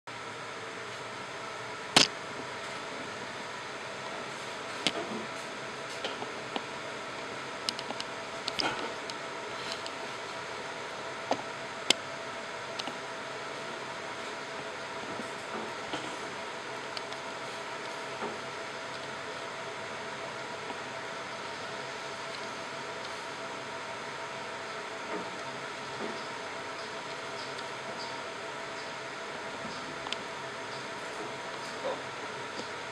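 Steady hum of running machinery with several faint tones in it, broken by scattered sharp clicks, the loudest about two seconds in.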